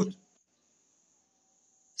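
A pause in a man's speech, near silent except for faint, steady, high-pitched chirring of crickets in the background.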